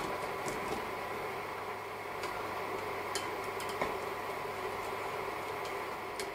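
A pot of creamy orzo in broth simmering on an induction hob: a steady faint hum and hiss, with a few soft scattered pops and ticks.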